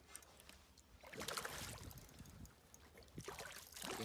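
Faint splashing of a hooked smallmouth bass thrashing at the water's surface as it is reeled toward the boat, louder near the end.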